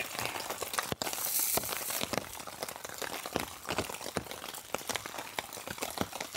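Food frying in a cast iron skillet: a steady sizzle full of small crackles and pops of spitting fat.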